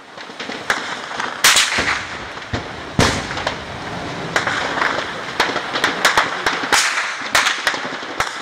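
Distant gunfire: a run of irregular shots, with two much louder reports about one and a half and three seconds in.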